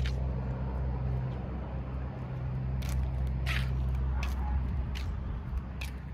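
Steady low hum and rumble of outdoor background noise, easing off in the last seconds, with a few faint clicks.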